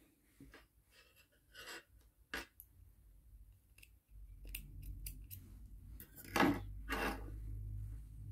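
Small spring-loaded thread snips cutting crochet yarn: a series of short snips and clicks, the loudest in the last couple of seconds, over a low rumble that comes in about halfway.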